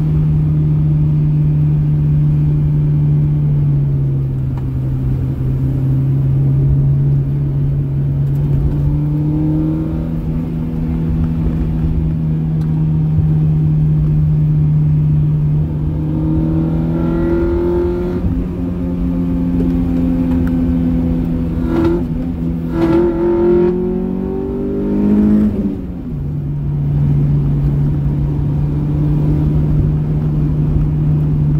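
Honda Prelude's swapped G23 four-cylinder engine heard from inside the cabin, pulling along at a steady drone. Past the middle the revs climb twice, then drop off suddenly a few seconds before the end and settle back to the steady note.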